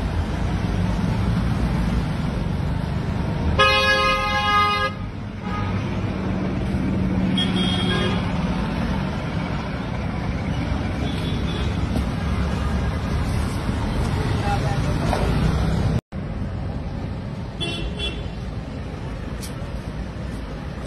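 Steady street traffic noise, with a car horn blaring once for about a second a few seconds in and fainter horn toots later. The sound cuts out for an instant about three-quarters of the way through.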